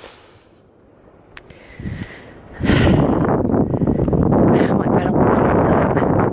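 Wind buffeting the camera microphone: a rough, fluctuating rumble that starts suddenly about two and a half seconds in and stays loud, after a short quieter stretch with a faint tick.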